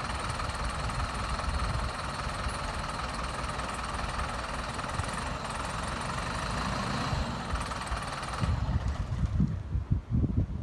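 Diesel engine of an Optare single-deck bus idling steadily; the engine note cuts off about eight and a half seconds in, leaving gusts of wind on the microphone.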